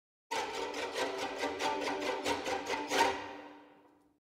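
Sampled orchestral strings from Sonokinetic's Grosso library playing a fast repeated-note phrase on one chord, about five short strokes a second. The last stroke comes about three seconds in and rings away.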